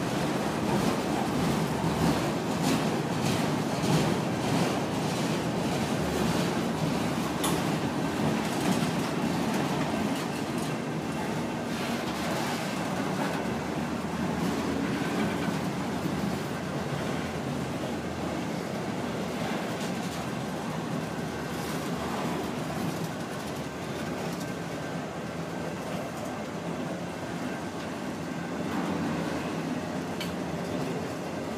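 CSX freight train of autorack cars rolling past: a steady rumble of steel wheels on the rails, with rapid clicking of wheels over the rail joints in the first half that thins out later.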